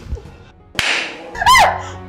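A slap across the face, one sharp whip-like crack with a hissing tail about a second in. About half a second later comes a short, loud, high-pitched cry that rises and falls in pitch, over background music.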